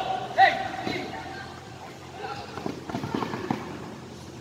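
Voices calling out on a basketball court during play, one held call near the start, then a few short knocks.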